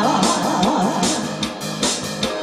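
Karaoke backing track playing between sung lines: a guitar-led instrumental line over a steady beat.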